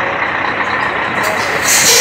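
Scania 113H truck's straight-six diesel engine running as the truck creeps forward, with a loud air brake hiss near the end as it is brought to a stop.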